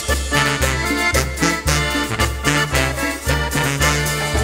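Live banda playing an instrumental cumbia passage: accordion melody over a steady beat and repeating low bass notes.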